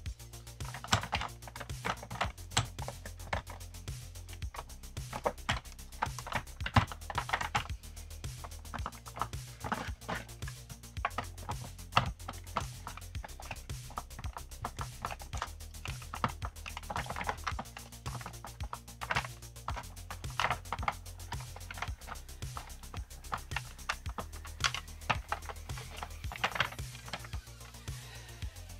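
A cloth wiping and rubbing over a plastic vacuum base housing, with scattered light clicks and knocks as the parts are handled. Background music with a steady low bass plays underneath.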